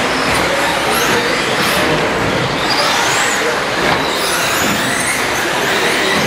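Electric 1/10-scale short course RC trucks racing on an indoor track: high-pitched motor whines rising and falling over a steady wash of hall noise.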